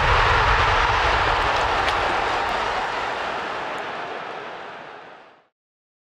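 A steady rushing whoosh from the intro's logo sound effect, loudest at the start and fading away over about five seconds into silence.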